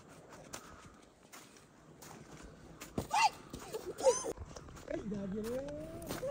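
Footsteps on a slushy, trampled snow path, faint and regular, then people's voices nearby: two loud high-pitched calls a few seconds in, followed by talking.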